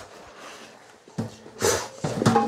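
A dog sniffing and snorting briefly at close range, with a light knock about a second in.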